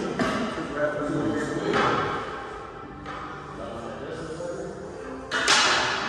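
Sharp knocks of a pool game, cue and billiard balls striking on the table: one about two seconds in and a louder one about five and a half seconds in, under voices and background music.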